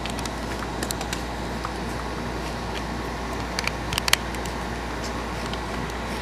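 Steady hum and hiss of a room air conditioner, with a few light clicks from handling the PSP and its USB cable, the loudest pair about four seconds in.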